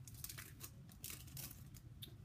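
Foil wrapper of a Pokémon trading-card booster pack being torn open and crinkled by hand, in faint, scattered crackles.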